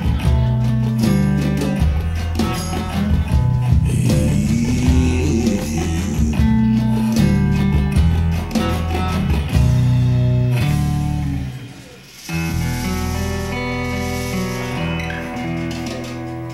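Acoustic guitar playing the instrumental close of a slow blues song, plucked single notes and chords. Near the end the sound dips briefly, then steadier, held chords carry on.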